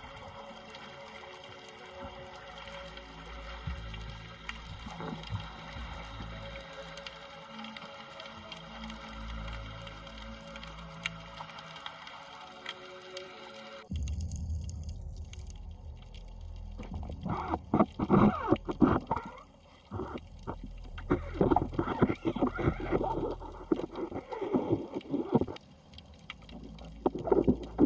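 Background music for roughly the first half, cut off suddenly about halfway through. Then comes the raw sound of water moving around an underwater camera in the shallows, in irregular loud bursts of sloshing and bubbling.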